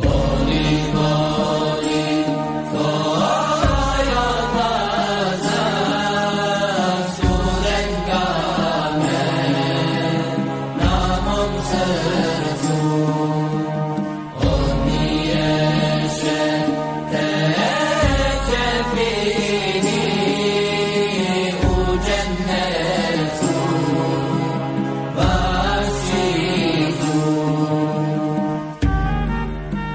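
Religious chanting: a solo voice sings a slow, ornamented melody that slides up and down. Under it, a deep low note sounds and is held, coming in again about every three and a half seconds.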